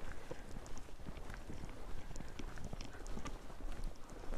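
Footsteps of people walking on a gravelly road edge: a quick, irregular run of small scuffing steps.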